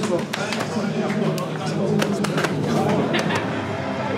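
Indistinct chatter of several people greeting one another, with irregular sharp taps and slaps scattered throughout.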